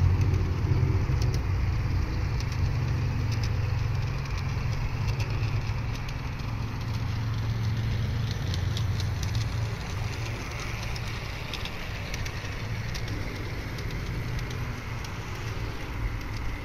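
Large-scale garden railway train running on its outdoor track: a steady low motor hum with light clicks from the wheels on the rails, slowly fading.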